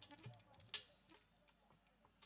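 Near silence, broken by a few faint clicks and soft low thumps in the first second.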